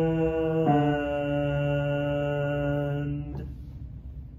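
A man's tenor voice singing a held hymn line, moving to a new note just under a second in and holding it steady until it stops sharply about three seconds in.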